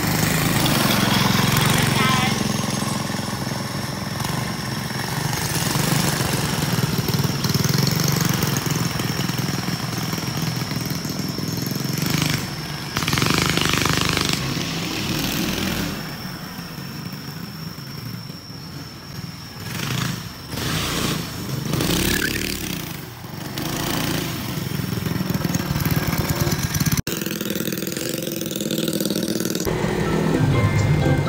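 Small go-kart engine running as the kart is driven about, its level rising and falling as it pulls away and comes back, with a steady thin high whine over it.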